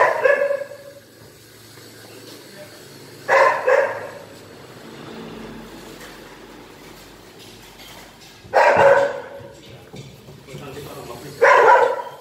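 A dog barking: four short barks spaced a few seconds apart, the second coming as a quick double bark.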